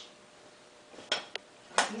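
Three short, sharp clicks and knocks in the second half, from a hard metal object, a pop-gun sculpture, being handled over an open carrying case. The last knock is the loudest.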